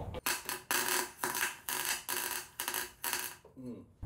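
MIG welder tacking steel deep inside a tube: about seven short bursts of arc sound, each a few tenths of a second, with brief breaks between. The welder finds the sound is not what he wants to hear, and it goes with porosity in the tacks from poor shielding-gas coverage.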